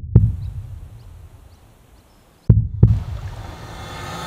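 Heartbeat sound effect: a slow double thump, lub-dub, heard twice, once at the start and again about two and a half seconds in. After the second beat a hiss swells steadily louder.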